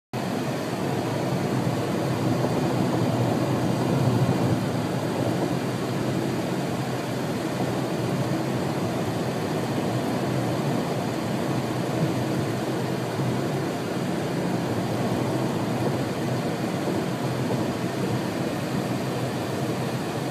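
Steady rumbling noise of a car driving, heard from inside the cabin.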